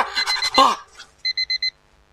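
Electronic alarm clock beeping in quick short bursts, a tight group of four beeps about a second in. At the start a man's wavering startled cry sounds over the first beeps as he wakes.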